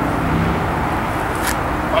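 Steady low outdoor background rumble, with one short sharp click about one and a half seconds in.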